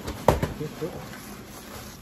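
A single sharp knock about a quarter second in, such as an object set down or bumped on the table, followed by faint murmured voice and room tone.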